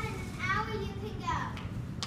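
A young child's voice speaking, high-pitched, over a low steady room noise.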